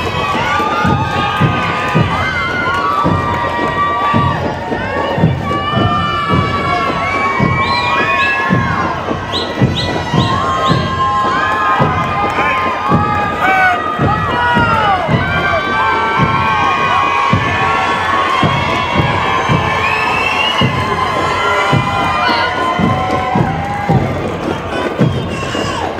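A large crowd of spectators cheering, whooping and shouting without a break, with a few short high whistles around eight to ten seconds in. A regular low thump runs underneath, about twice a second.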